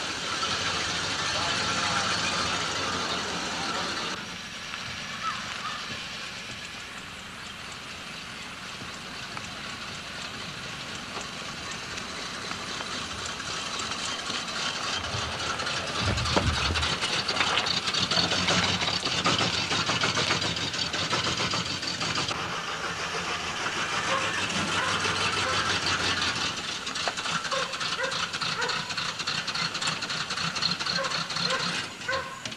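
An old sedan's engine running as the car drives, with a steady hiss behind it; it is loudest when the car passes close, about sixteen seconds in.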